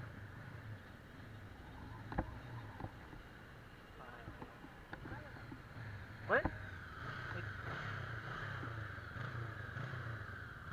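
Suzuki Bandit 650's carbureted inline-four running at low revs under a gentle ride, a steady low hum with wind rushing past the microphone, the rush growing louder about seven seconds in. A few brief clicks and a short chirp sound along the way.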